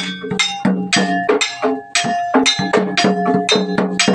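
Kuda kepang (jaranan) gamelan music: struck metal gong-chimes and percussion ringing in a steady, even rhythm of about four strokes a second.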